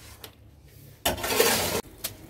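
Steel hoe blade scraping across a concrete floor while mixing dry cement and sand: a light knock, then one loud scrape about a second in that cuts off suddenly.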